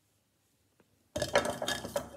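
Colouring markers clattering against each other and the sides of a cup as a hand rummages through them to pick one out blindly. Near silence for about the first second, then the rattling starts suddenly and keeps going.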